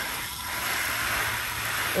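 Water spraying from a garden hose nozzle onto the leaves of a potted plant, a steady hiss.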